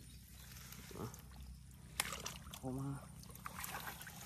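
Faint sloshing of bare feet and hands in shallow muddy water, with one sharp click about two seconds in.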